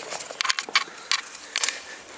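Handling noise: a quick series of light clicks and knocks, about six in two seconds, as the wound-up toy dragster is moved and set down.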